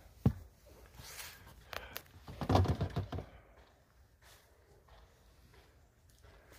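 A ring-pull tin of wet cat food being opened: a sharp click just after the start, then softer handling noises with a louder stretch about two and a half seconds in.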